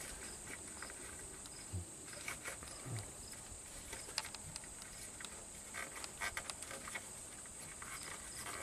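An electrical connector on the EBCM (the ABS brake control module) being worked loose and pulled by hand: a few faint scattered clicks and rattles, with a couple of soft low thumps. A steady faint high-pitched hiss runs underneath.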